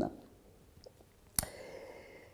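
A pause in speech: near silence, then a single sharp click about one and a half seconds in, followed by a faint steady hum.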